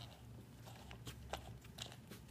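Faint scattered small clicks and rubs of hands loosening a small plastic bench vise's clamp screw and handling the coax connector, over a low steady hum.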